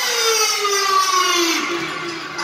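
A sustained, siren-like tone with harmonics sliding slowly down in pitch, a falling sweep in the highlight video's soundtrack.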